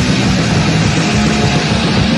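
Metallic hardcore punk band playing an instrumental stretch on a 1985 demo recording, led by loud distorted electric guitar.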